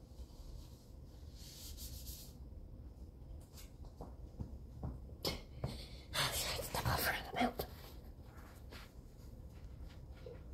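Paper towel being handled and crumpled close by, with a few knocks; the loudest crinkling rustle comes about six to seven and a half seconds in.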